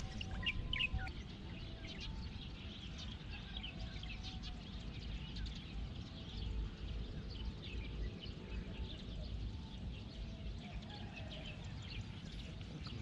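Several birds chirping and calling, a steady scatter of short high chirps with a few longer held notes, over a constant low rumble.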